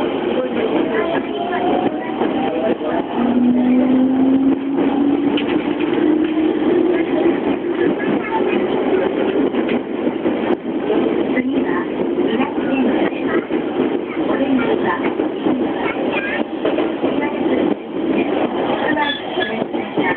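JR E231-series electric commuter train heard from inside the car as it gathers speed: the traction motor whine rises steadily in pitch over several seconds, over the running rumble of wheels on rail with scattered rail-joint clicks.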